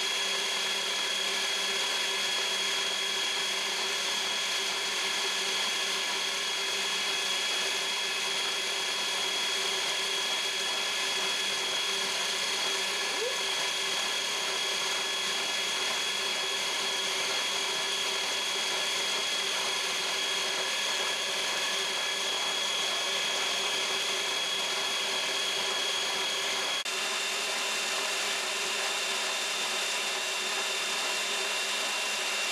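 Kenmore Elite Ovation 500 W tilt-head stand mixer running at high speed, creaming butter and sugar in its glass bowl. It gives a steady motor whine, and the pitch of the whine shifts abruptly near the end.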